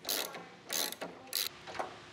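Socket ratchet wrench turning a bolt in a grand piano's cast-iron plate: four short ratcheting rasps about half a second apart, the last one fainter.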